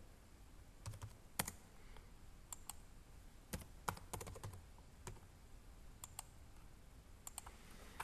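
Faint, scattered keystrokes on a computer keyboard, a dozen or so irregular taps with pauses between them, as numbers are typed in.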